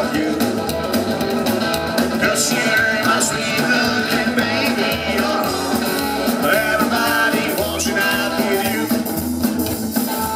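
Live psychobilly band playing a song with upright double bass, drum kit and electric guitar, heard through the PA from the audience.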